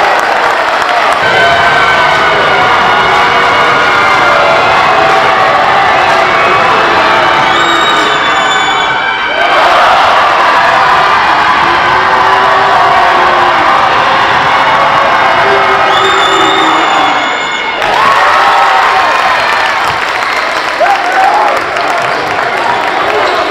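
Basketball crowd in a packed gymnasium cheering and shouting loudly, with many voices at once and a brief drop in level twice.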